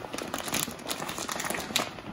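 A dried coyote pelt being cupped and rolled over by gloved hands on a wooden pole, its dry skin and fur giving off irregular small crinkles and crackles.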